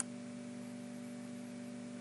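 Steady low electrical hum with faint hiss in the recording, and a single computer mouse click right at the start.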